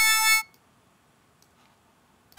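A synthesized note from a Max/MSP additive-synthesis patch of wavetable oscillators, a steady, reedy tone rich in harmonics, cuts off about half a second in. Near silence follows.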